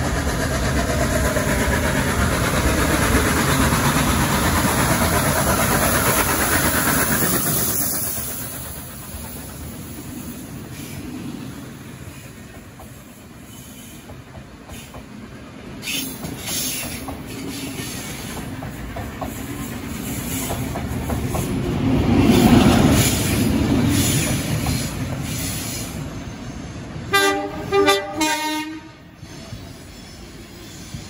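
A train running past, loud for the first several seconds and then fading away; a second swell of train running noise follows. Near the end a train horn sounds a few short blasts.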